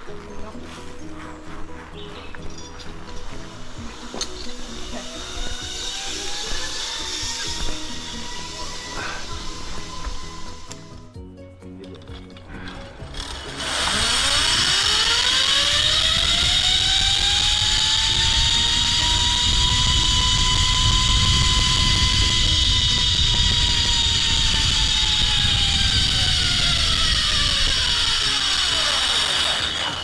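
Zipline trolley pulleys running along a steel cable: a loud whine that rises in pitch as the rider speeds up, holds, then falls as the rider slows and stops near the end, over wind rushing past the microphone.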